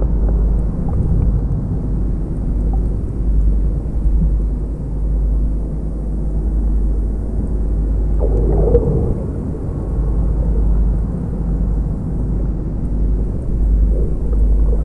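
Muffled, steady low rumble of water moving against an underwater camera's waterproof housing. About eight seconds in there is a brief swell of somewhat higher-pitched noise.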